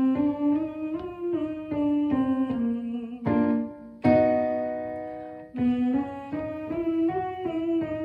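Electric keyboard playing a vocal warm-up pattern, a short scale stepping up and back down note by note, with a woman humming the notes on a closed-mouth 'M'. About four seconds in, a keyboard chord rings out, and then the up-and-down scale pattern starts again.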